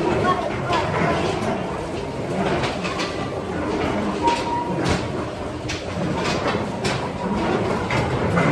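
The rotating drum of a vortex tunnel, running with a steady mechanical noise, with a few sharp knocks in the second half.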